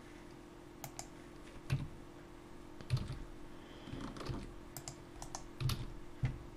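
Computer keyboard keystrokes and mouse clicks, scattered irregular presses with a few heavier key strikes, as shortcuts are entered while modeling in Blender.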